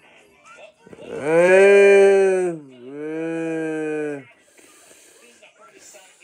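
A loud, drawn-out moo in two long parts: the first holds steady for about a second and a half, then dips in pitch and carries on lower and quieter for over a second.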